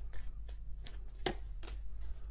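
Tarot cards being handled and drawn from the deck: a few light, sharp card clicks and snaps spread across two seconds.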